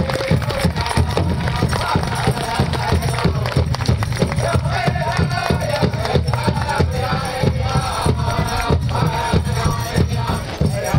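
Powwow drum group playing a hoop dance song: a steady beat on a big drum under group singing.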